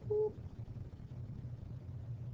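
Two short electronic beeps at a steady pitch at the very start, then a steady low hum.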